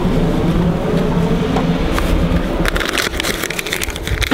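Paper dollar bills crinkling and rustling as they are pushed into the slot of a metal donation box, starting about two and a half seconds in, over a steady low hum.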